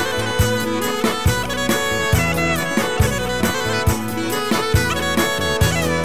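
Instrumental passage of an Albanian folk song: a reed wind instrument plays an ornamented, gliding melody over a steady beat.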